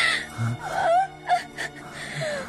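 An injured woman gasping and moaning in pain, with short sharp breaths and wavering cries, over a sustained mournful film score.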